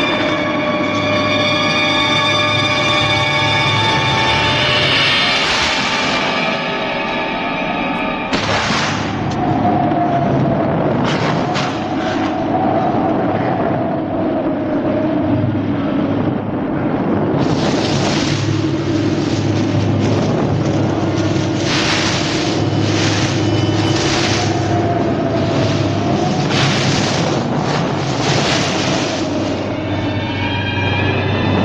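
Eerie film score of sustained, layered tones, then a wavering high tone over a low drone. From about eight seconds in, a run of loud booms breaks in, coming thickest in the second half.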